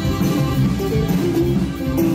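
Live norteño conjunto playing a huapango, the bajo sexto strummed over electric bass.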